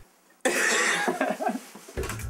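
A person coughing: a harsh burst that starts about half a second in and lasts about a second.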